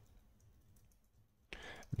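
Near silence, then near the end a short, faint run of clicking at a computer.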